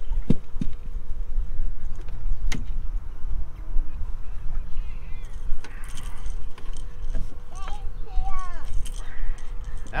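Clicks and light rattles from a small blue catfish being handled and taken off the hook, over a steady low rumble. A voice speaks briefly near the end.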